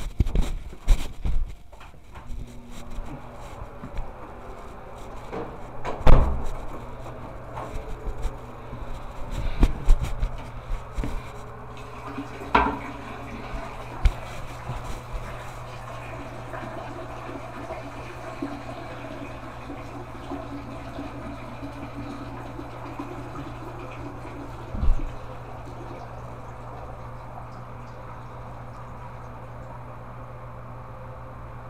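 A series of bumps and knocks, then from about halfway a toilet flushing and water running as the tank refills, over a steady low hum.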